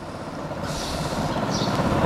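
Low rumble of a passing motor vehicle, growing steadily louder, with a brief higher hiss in the middle.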